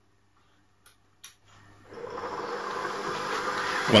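Two short clicks about a second in, then an electric stand mixer starts up and runs steadily, its wire whisk beating eggs and sugar in a stainless steel bowl.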